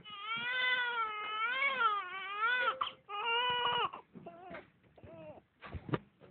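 Newborn baby crying: one long wavering wail of nearly three seconds, then a shorter cry, then fainter, broken cries.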